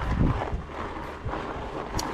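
Wind buffeting a handlebar-mounted camera's microphone over the rumble of fat-bike tyres rolling on loose gravel and rocks. A sharp knock comes at the very end.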